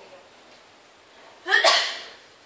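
A person sneezing once, short and loud, about one and a half seconds in.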